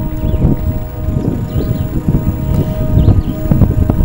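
Wind buffeting the microphone, a loud uneven rumble, with a steady hum underneath.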